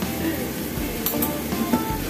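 Background music with held notes, and a couple of light clinks about a second in.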